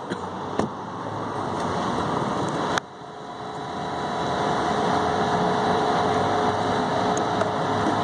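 A car engine running, a steady vehicle sound with faint even tones. There is a single sharp knock about three seconds in, after which the sound drops away and then builds back up.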